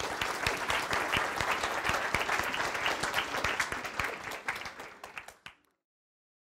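Audience applauding: dense clapping from many hands that thins out and fades away near the end.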